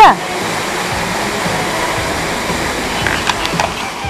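Waterfall pouring into a pond, a steady rush of falling water.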